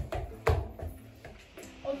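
Two dull thumps about half a second apart, the second the louder, then faint steady low tones under a quiet stretch.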